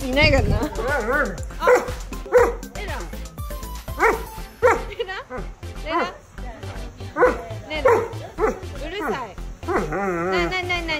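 A Doberman barking repeatedly, a string of short barks coming about one or two a second, demanding a treat.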